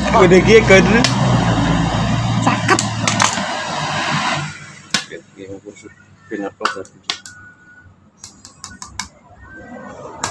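A motorcycle engine running close by, with voices over it, stops abruptly about four and a half seconds in. Then come scattered light metallic clinks and taps as metal tools and front-fork parts are handled on a tiled floor.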